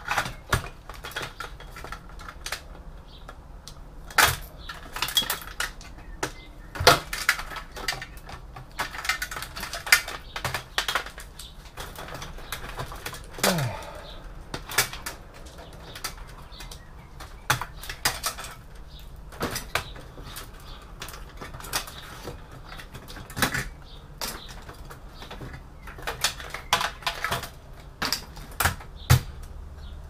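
Sheet-steel desktop PC case being stripped by hand: irregular metallic clicks, clinks and knocks as a screwdriver, screws, cables and drive cages are worked loose.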